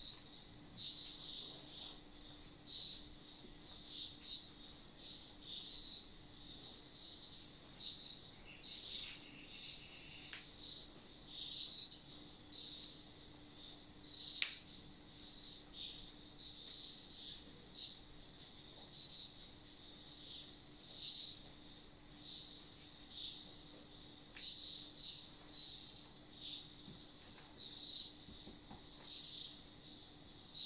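Insects chirping in short, high-pitched bursts, roughly one a second at an uneven pace, over a faint steady hum, with one sharp click about halfway through.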